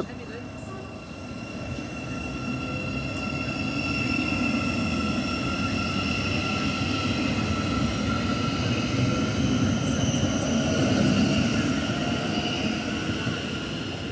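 Thameslink Class 700 (Siemens Desiro City) electric multiple unit moving past the platform: a whine of several high tones from its electric traction equipment over a low rumble of wheels on rail. It grows louder until about eleven seconds in, then fades as the end of the train goes by.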